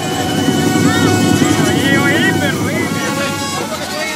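A loud, steady low rumble, rising as it starts, with voices from a crowd over it.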